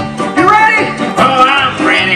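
Bluegrass-style country music with a banjo, a melody with bending notes over plucked accompaniment.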